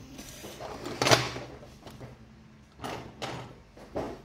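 A sterling silver miniature car is handled and set down on a workbench. There is one sharp knock about a second in, then a few softer knocks and scrapes near the end.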